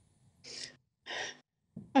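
A woman's two short, audible breaths, about half a second apart, taken just before she starts to speak.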